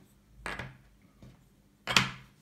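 Wooden memory-game discs flipped over and set down on a wooden tabletop: a soft knock about half a second in and a sharp wooden clack near the end.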